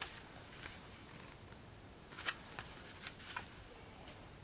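Faint rustling and a few soft, irregular clicks of paper pages being turned in a small pocket-size coloring book.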